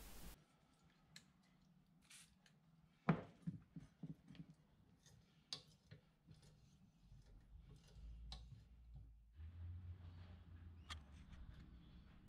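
Faint, scattered clicks and ticks from a hand tap and tap wrench cutting an M12 thread into a metal hammer head held in a vise, with the loudest click about three seconds in.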